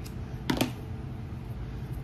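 A single sharp snip of scissors cutting jute rope, about half a second in, over the steady low hum of an electric fan.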